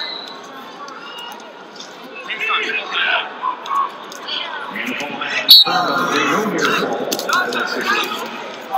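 A referee's whistle blows a short, sharp blast about five and a half seconds in, starting the wrestling period from referee's position. Voices of people around the mat are heard before and after it.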